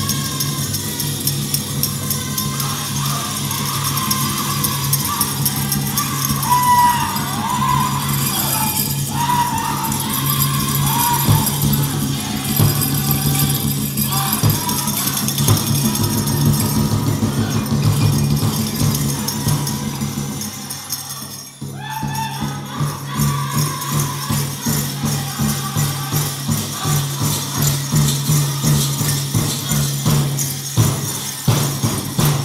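Powwow drum group playing: a large drum struck in a steady beat with men singing over it, and the metal bells on the dancers' regalia jingling. A little past the middle the sound drops briefly, then the drum comes back in with strong, evenly spaced beats.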